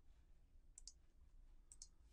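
Faint clicks at a computer as text is copied and pasted into code: two quick double clicks about a second apart, in near silence.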